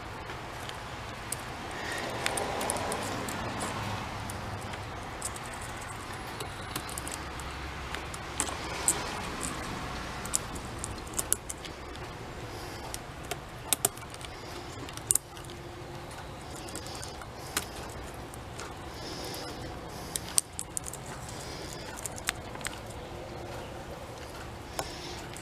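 Chainsaw chain links clinking and rattling as the loose chain is worked by hand into the bar groove and around the drive sprocket: scattered light metallic clicks at irregular intervals.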